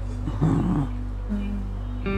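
Brief wordless voice sounds with a held note, over a steady low hum and soft background music.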